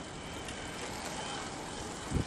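Steady street background noise with no distinct event in it.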